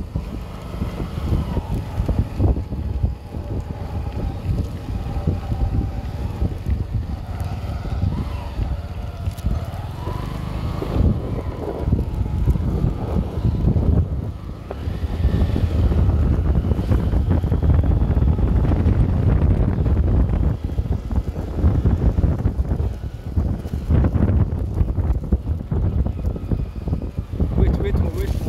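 Wind buffeting the microphone of a camera on a moving vehicle, a steady low rumble of wind and road noise that grows heavier about halfway through.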